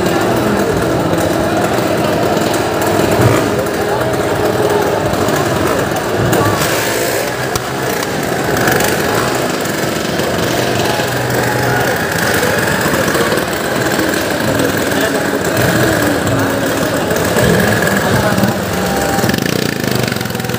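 Several motorcycle engines running steadily in a well-of-death drum, under a crowd's voices.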